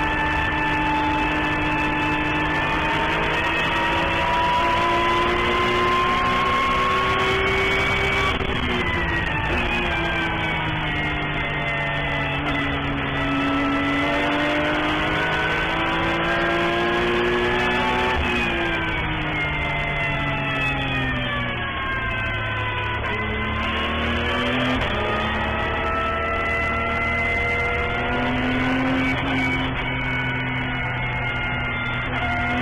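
Porsche 911 GT3 Cup's flat-six engine heard from inside the cockpit, its pitch climbing under acceleration. It drops sharply about eight seconds in, falls off again from about eighteen seconds in, and each time climbs again afterwards.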